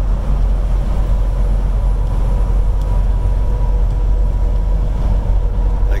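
Steady low rumble of a vehicle's engine and road noise heard from inside the cab while cruising at highway speed, with a faint steady whine above it.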